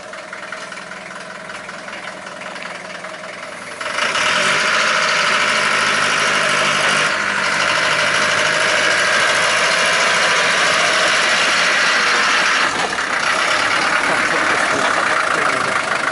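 Land Rover 88 Series III engine running as the vehicle backs up the driveway toward the microphone. It is moderate for the first four seconds, then suddenly much louder and steady, with a short dip about three-quarters of the way through.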